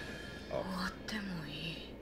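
One short, quiet line of Japanese dialogue from an anime character, about half a second to under two seconds in, the voice sinking in pitch toward its end.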